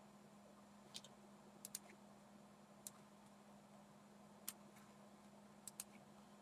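Near silence with a faint steady hum, broken by a handful of soft computer-mouse clicks, some in quick pairs, scattered through.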